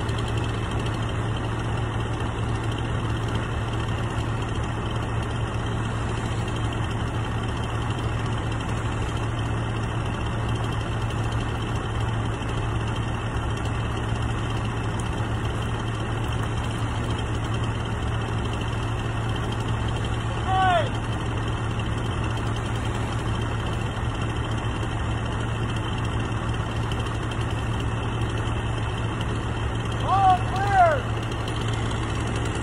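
A large engine idling steadily, with one brief high-pitched call about two-thirds of the way in.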